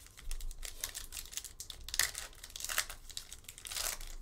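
Silver foil wrapper of a trading card pack crinkling and tearing open by hand: a run of sharp crackles, with louder rips about two seconds in and near the end.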